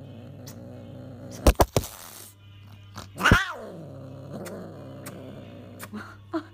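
A Scottish Fold cat gives one loud meow, falling in pitch, about three seconds in, after a few sharp clicks about a second and a half in. A low steady hum runs underneath.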